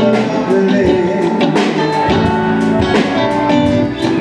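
Live band playing a song: electric guitar over a drum kit keeping a steady beat, with keyboard.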